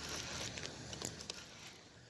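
Faint mechanical clicks from a Piscifun Torrent baitcasting reel being worked by hand, a few scattered ticks that grow quieter toward the end.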